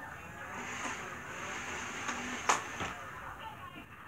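Battery-powered Nerf blaster's motor whirring steadily, with a sharp click about two and a half seconds in and a fainter one just after.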